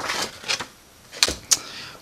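A sheet of paper being slid across another on a desk, with a dry rustle, then two sharp taps a third of a second apart a little after a second in.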